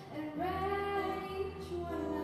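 A girl's solo voice singing into a microphone, holding one long note from about half a second in, with low accompaniment beneath.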